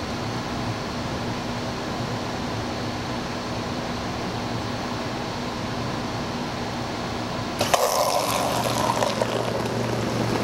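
Steady low hum, then about three-quarters of the way in the Bevi water dispenser starts pouring: its pump hums and water streams from the spout into a cup with a rushing noise.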